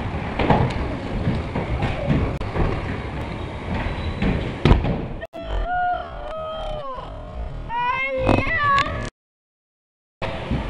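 Stunt scooter wheels rolling and clattering on the concrete ramps of an echoing indoor skatepark, with several sharp knocks. About five seconds in, a child's long, drawn-out shouts take over, and near the end the sound cuts out for about a second.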